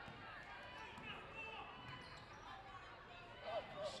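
Faint basketball game sounds on an indoor court: a ball dribbling on the hardwood with distant voices of players and spectators.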